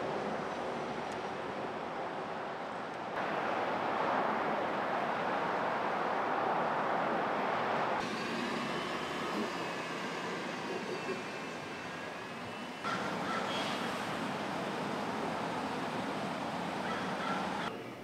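Outdoor location ambience across several cut-together shots: a steady rush of traffic and surf whose character changes abruptly at each cut, about three, eight and thirteen seconds in. Faint wavering pitched sounds run through the middle stretch, between about eight and thirteen seconds in.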